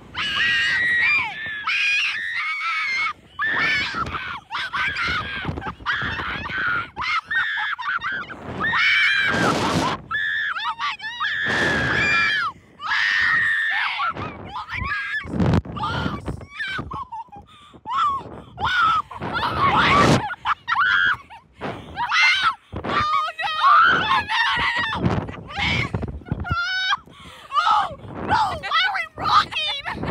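Two young women screaming and laughing on a reverse-bungee slingshot ride while it flings them through the air: long, high, wavering screams broken by short gasps and laughs.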